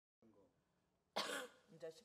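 A person coughs once, sharply, about a second in, with faint murmured voice before and after.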